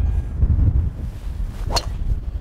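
Golf driver striking a ball off the tee: one sharp crack near the end, over a steady low rumble of wind on the microphone.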